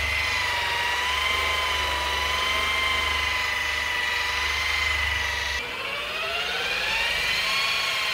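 Electric rotary polisher with a foam pad running against car paint: a steady high motor whine that wavers slightly in pitch. Near the end the whine drops lower and climbs back up over a second or so as the motor speeds up again.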